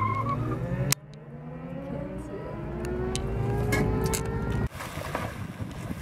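Car engine heard from inside the cabin, its note rising steadily as the car accelerates away, after a sharp click about a second in. Near the end it cuts off suddenly to a steady hiss.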